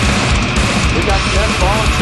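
Grindcore metal band playing: heavily distorted guitars and bass over fast, pounding drums. A voice comes in over the band about a second in.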